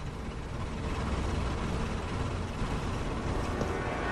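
Car engine rumbling low as a car moves off along the street, growing louder about a second in.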